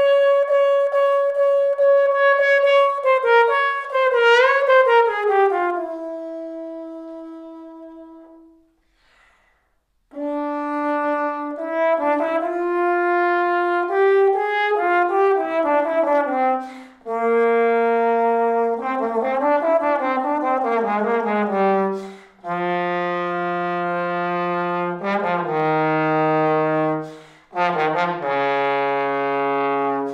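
Solo trombone playing orchestral excerpts. A high held note steps down and fades away to silence. After a pause of about a second, a new, louder passage of separate sustained notes works its way down into the low register.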